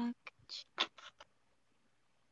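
A few short scratching strokes of a pen on paper within about a second.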